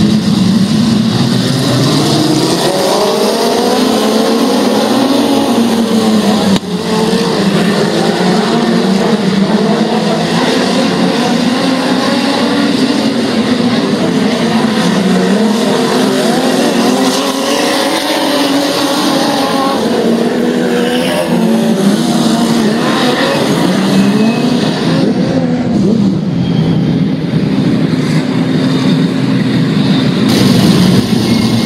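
Several Limited Sportsman open-wheel dirt-track race cars running together in a pack, their engines overlapping and revving up and down in pitch.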